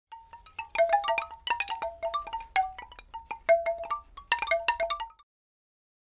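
Short intro jingle of bright, chime-like struck notes: a quick, irregular run of ringing tones on a few pitches that cuts off about five seconds in.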